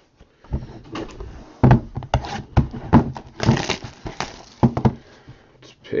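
Cardboard trading-card boxes being handled on a tabletop: a run of knocks and taps as a sealed 2015 Topps Supreme box is taken from the stack and set down, with a longer scraping rustle about three and a half seconds in.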